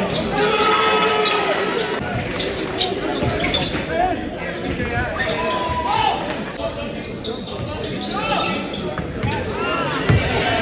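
Basketball game in a gym: the ball bouncing on the hardwood court, short sneaker squeaks, and the shouts of players and crowd, all echoing in the hall.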